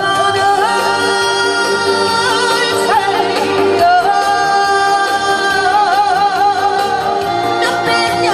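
A woman singing a Korean trot song into a microphone with instrumental accompaniment, holding long notes with a wavering vibrato.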